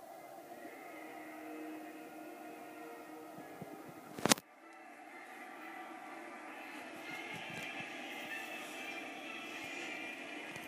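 Tense orchestral film score playing through a television's speaker, with held notes, and one sharp, loud click about four seconds in. In the second half a rumbling noise builds under the music and it grows louder.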